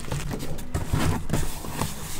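Cardboard shipping-box flaps being folded shut and pressed down by hand over a tight load of packing, with scuffing cardboard and a few soft thumps.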